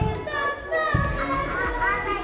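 A children's action song, sung with music, while a group of toddlers move and chatter around it, with a low thump every half second or so.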